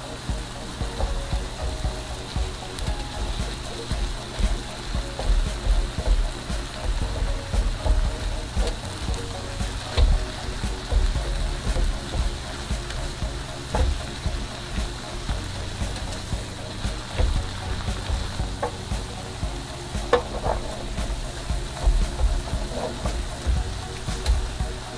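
Ground turkey with diced onion and minced garlic sizzling in a frying pan, stirred and broken up with a silicone spoon that knocks and scrapes against the pan at irregular moments.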